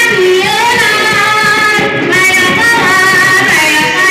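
Worship music with women singing long, held notes over the accompaniment.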